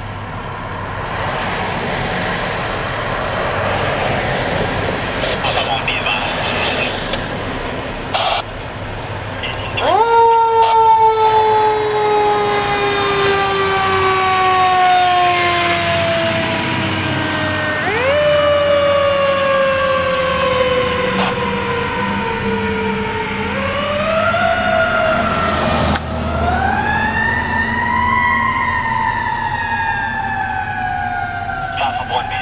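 Fire engine's Federal Q2B mechanical siren winding up sharply and coasting slowly down in pitch, about four times, over the running diesel engine of a 2010 Pierce Velocity pumper. For about the first ten seconds only the truck's engine and a steady rumble are heard as it pulls out.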